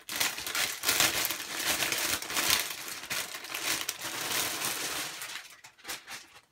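Clear plastic packaging bag crinkling and rustling continuously as a plush cushion is handled and pulled out of it, dying away near the end.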